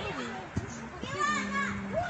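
Children's voices in the background, with a child's high-pitched call about a second in, over low voices.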